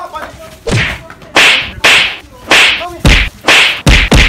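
A rapid series of about seven loud whip-like lashes, roughly two a second, starting about a second in: blows being dealt in a beating.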